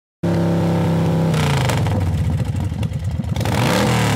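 A car engine running at a steady pitch, then revving hard with a fast throbbing note from about a second and a half in, its pitch sweeping upward as it accelerates near the end.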